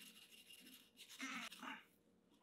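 Faint scratchy scrubbing of steel wool against a glass candy-dispenser globe, wearing off a screen-printed logo softened by a vinegar soak, with two short, louder scrapes in the second half before it cuts off suddenly.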